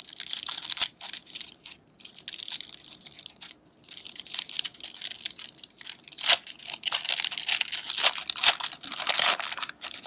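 Foil wrapper of a 1994 Upper Deck SP basketball card pack being torn open and crinkled by hand, in irregular bursts of crackling. It is quieter early on and loudest in the second half.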